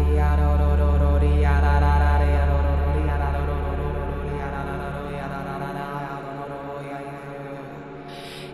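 Sound-healing drone music: a deep sustained drone under long, chant-like toned notes. It fades steadily from about two seconds in, and the deep drone drops away about six seconds in.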